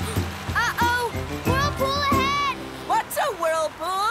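Cartoon soundtrack: background music with wordless character voices exclaiming over it; the music stops about two and a half seconds in and the voices carry on alone.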